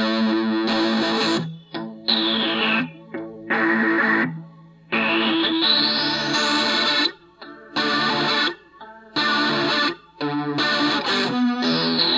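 Instrumental music: distorted electric guitar chords with effects, played in abrupt stop-start blocks that cut off sharply every second or two, with high sweeping tones that glide down and then up in pitch.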